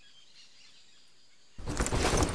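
Faint outdoor ambience with soft birdsong. About a second and a half in, a much louder, busy sound with many sharp hits cuts in suddenly and carries on.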